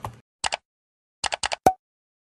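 A few short, sharp clicks in otherwise dead silence: two about half a second in, then a quick run of four near the end, the last with a brief ringing tone.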